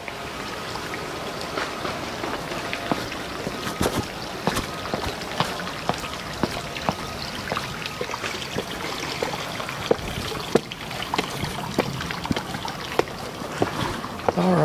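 Water trickling and splashing steadily into a backyard swimming pool, with many small irregular splashes.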